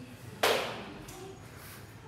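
A single sharp hand clap about half a second in, echoing briefly in the hall.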